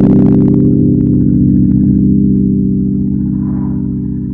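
A single held guitar chord rings on and slowly fades, with a few faint clicks over it.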